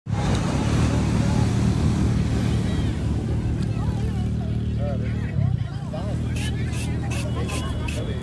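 A steady low rumble with voices in the background. From about six seconds in come quick, regular scraping strokes, about three a second, of a blade peeling the skin off a fresh cucumber.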